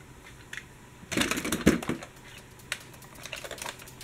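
Toy trams and vehicles clattering against each other in a plastic storage box as a hand rummages and lifts one out: a dense burst of rattling about a second in, then scattered clicks.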